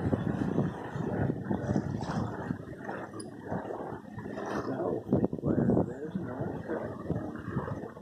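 Wind gusting over the microphone of a sailing yacht under way, rising and falling in level, with indistinct talk mixed in.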